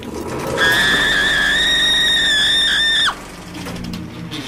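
A woman's high-pitched scream, held for about two and a half seconds and wavering slightly, breaking off with a drop in pitch, over eerie low music in a horror logo sting.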